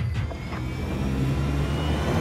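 A deep, steady rumble with a faint high tone slowly rising in pitch, part of a film trailer's layered sound design.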